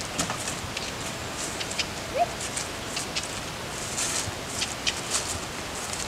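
Steady outdoor background hiss with scattered soft rustles and clicks, and one brief rising chirp about two seconds in.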